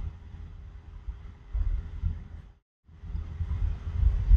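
Low background rumble with a faint steady hum, the room noise on the voiceover microphone between phrases, cut to dead silence for a moment about two and a half seconds in.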